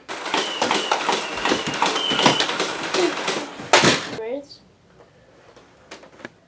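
Loud, indistinct shouting and scuffling with knocks and rustling, stopping abruptly about four seconds in.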